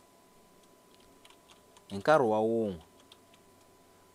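Faint computer keyboard typing in the first half. About two seconds in comes one loud, drawn-out wordless vocal sound that falls in pitch and lasts under a second.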